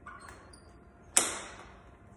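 A weightlifting belt's metal lever buckle snapped shut about a second in: one sharp clack that rings out briefly.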